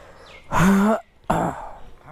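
A man clearing his throat close to the microphone: two short, loud rasping bursts about a second apart.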